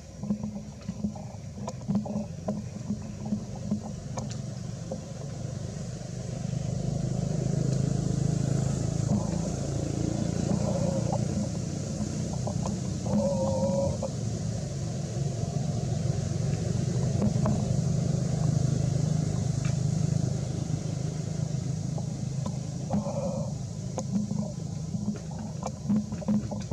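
Low steady engine rumble that grows louder about six seconds in and eases toward the end, with scattered light clicks and a couple of brief higher-pitched sounds.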